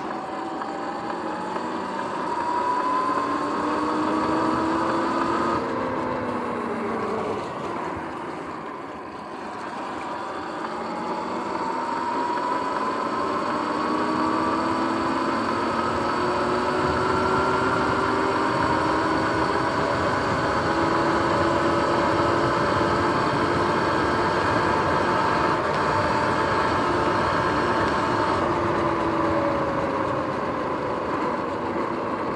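Sur-Ron X electric dirt bike under way: the whine of its electric motor and drivetrain rises in pitch as it accelerates, drops as it slows about a quarter of the way in, then climbs again and holds steady at cruising speed. Wind noise and tyre roar run underneath.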